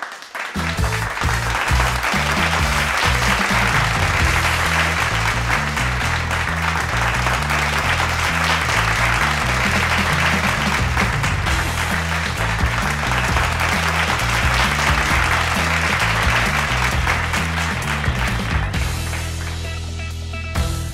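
Steady applause over music with a bass line that steps from note to note. The applause stops near the end while the music carries on.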